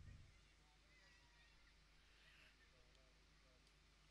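Near silence, with only very faint, indistinct background sound.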